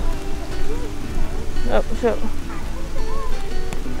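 Wind rumbling steadily on a clip-on microphone, under faint voices.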